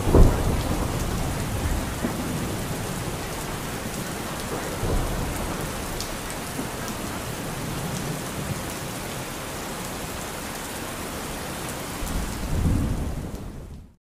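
Steady rain with rolls of thunder: a loud rumble just after the start and another near the end, then the sound fades out.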